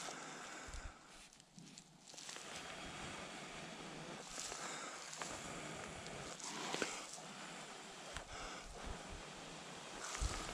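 Faint outdoor background hiss with soft rustles and a few light handling sounds as pieces of charred cotton char cloth are held and turned over by hand.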